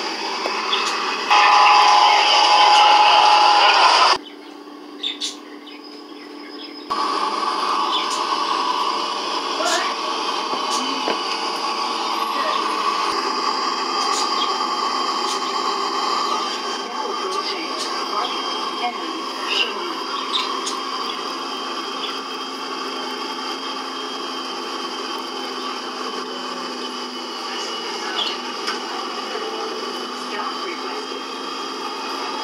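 Steady bus interior running noise, heard as played back through a TV speaker. It opens with a louder stretch carrying a steady high tone for about three seconds, drops quiet briefly, and then runs on evenly.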